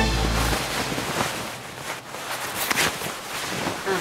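A music cue ends right at the start, then clothing rustles and swishes as garments are tossed through the air.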